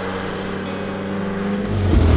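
Fiat Ritmo Abarth 130 TC's four-cylinder engine running at a steady pitch, with a deeper, louder rumble building near the end as the car comes close.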